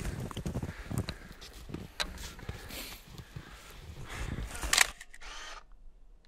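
Scattered clicks and rustles of people handling gear and shifting about in the snow, with a louder rustle just before the sound cuts off abruptly near the end.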